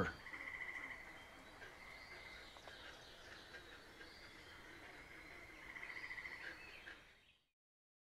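Faint outdoor ambience with two short trilling calls, each about a second long and about five seconds apart. The sound fades out near the end.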